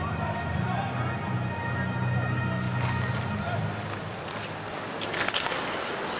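Ice-hockey arena crowd noise with sustained music tones that fade out about four seconds in, then a few sharp clacks of sticks and puck on the ice near the end.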